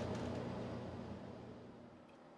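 Steady low workshop room hum with faint hiss, fading out gradually to near silence.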